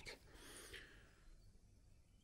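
Near silence: faint outdoor room tone, with one brief soft hiss about half a second in.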